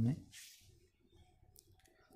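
A man's voice-over ends a word, followed by a brief hiss and then near silence with a few faint clicks before he speaks again.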